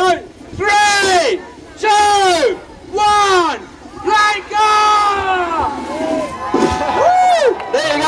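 A run of loud, drawn-out shouted cries, about eight in all, one voice at a time, each rising and then falling in pitch: pirate-style yelling.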